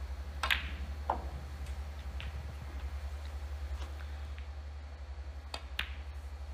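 Snooker cue and balls clicking: the cue tip striking the cue ball and balls knocking together on the table. There is a sharp click about half a second in and another about a second in, then two quick clicks in succession near the end.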